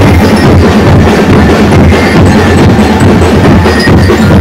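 Ati-Atihan street drum band playing a dense, continuous rhythm on drums, very loud on the recording.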